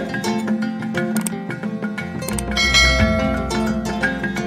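Background music with quick, repeated notes; a deep bass comes in a little past halfway.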